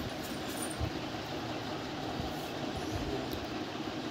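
Steady room background noise, a low hum with hiss like a running fan, with a few faint low bumps.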